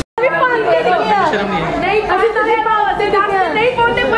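A brief moment of silence, then several people talking over one another in lively conversation.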